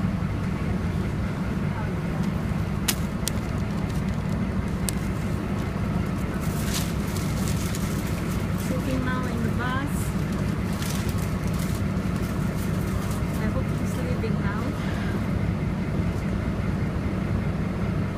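Steady low rumble of a shuttle bus running, heard from inside the passenger cabin, with a few sharp clicks and faint voices in the background now and then.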